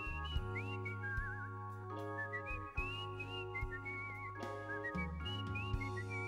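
A man whistling a high, warbling, sliding melody into a stage microphone over sustained organ chords and low held bass notes that change every couple of seconds.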